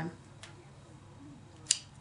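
Quiet room tone with a faint tick about half a second in and one short, sharp click near the end.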